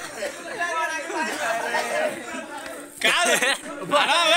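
Several men's voices talking and calling out over one another, with a louder voice breaking in about three seconds in.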